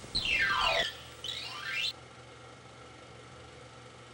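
A comic whistle sound effect: a tone slides steeply down in pitch, then slides back up, over about the first two seconds. After that only a faint steady hiss remains.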